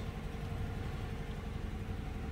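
The 5.7-litre Hemi V8 of a 2016 Dodge Durango R/T idling steadily, heard as a low rumble from inside the cabin.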